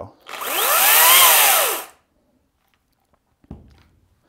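Makita XCU06 18-volt brushless cordless chainsaw triggered once and run free with no wood being cut: the motor and chain whine up and wind back down over about a second and a half. A faint knock follows near the end.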